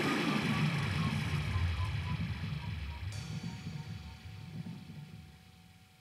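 The end of a live piece dying away: a low, wavering electronic rumble with a faint repeating echoed note fades steadily out to near silence about five seconds in, a thin steady tone joining about halfway.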